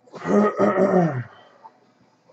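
A low, drawn-out groan-like vocal sound lasting about a second, its pitch falling steadily.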